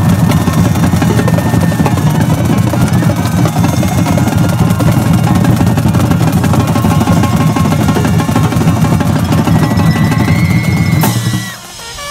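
High school marching band playing a stand tune: snare drums, tenor drums and cymbals drive a steady beat under the horns. The band cuts off sharply about a second before the end, and shouting voices take over.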